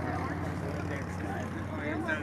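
Tour boat's engine running at a steady low hum, with people talking over it.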